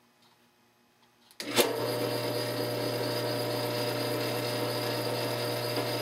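Drill press switched on about a second and a half in, its motor then running with a steady hum.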